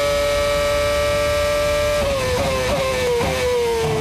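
Onboard sound of a 2008 Toro Rosso STR3 Formula 1 car's Ferrari 2.4-litre V8 running at high revs with a steady high-pitched note, which wavers and drops slightly in pitch about halfway through.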